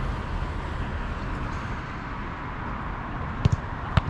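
Steady outdoor rumble on the microphone, with a football being struck: two sharp thuds close together about three and a half seconds in, and another at the very end as the ball reaches the goalkeeper.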